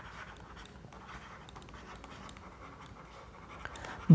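Faint scratching and tapping of a stylus writing on a tablet, over a low steady room hum.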